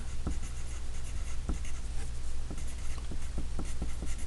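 Graphite pencil writing on paper: a soft scratching broken by many small, irregular ticks as the letters are formed.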